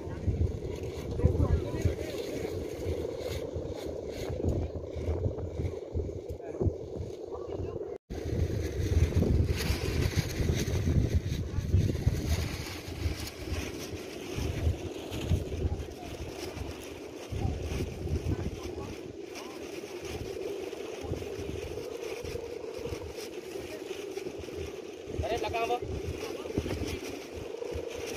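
Steady drone of Balinese kites' bow hummers (guangan) humming in the wind overhead, with gusts of wind buffeting the microphone.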